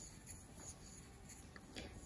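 Very quiet, faint scratching with a few soft ticks: yarn being drawn through loops on a wooden crochet hook while double crochet stitches are worked.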